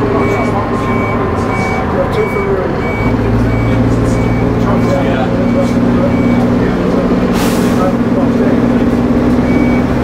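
Leyland Titan double-decker bus heard from the lower deck under way: the diesel engine drones steadily and steps up in revs about three seconds in. A high beep repeats about twice a second, pauses for a few seconds, then comes back near the end. A short hiss of air sounds around seven seconds in.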